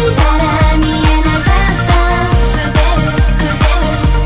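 Electronic pop music with a steady kick-drum beat, a little over two beats a second, under sustained melodic lines.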